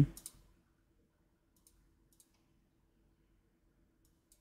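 A few faint computer mouse clicks, spread out about one and a half to two and a half seconds in, over a faint steady hum.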